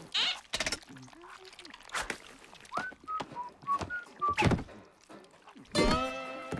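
Cartoon sound effects: several sharp thuds spaced over the few seconds, with a quick run of six short whistled notes jumping up and down in pitch in the middle, and brief wordless character grunts.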